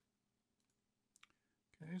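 A few faint computer keyboard and mouse clicks in a quiet room, the clearest pair a little over a second in.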